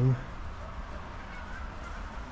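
A man's voice trails off on a drawn-out word, then only a faint, steady low rumble of background noise.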